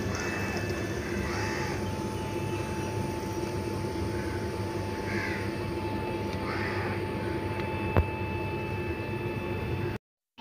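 Crows cawing a few times over a steady background hum, with a single sharp click about eight seconds in.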